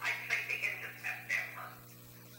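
Indistinct talking in a small meeting room that stops just before the end, over a steady mains hum.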